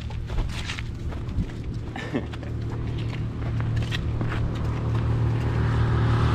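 A motorcycle engine running steadily at idle, growing louder toward the end, with a few footsteps on dirt.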